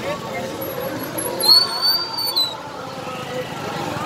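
Procession crowd voices with motorcycles and scooters riding past. A shrill steady high tone lasting about a second comes about a second and a half in.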